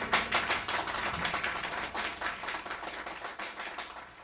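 Audience applause, many hands clapping at once, fading out steadily.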